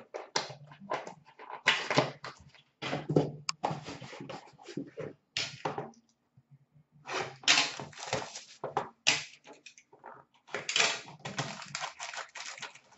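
Hands handling and opening trading-card packaging: irregular rustling, scraping and light clicks of cardboard and plastic, in bursts with short pauses.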